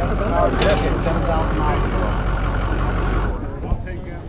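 Ford F-350 pickup's diesel engine, a Jasper replacement with about 7,000 miles on it, idling steadily under the open hood, then cutting off suddenly about three seconds in.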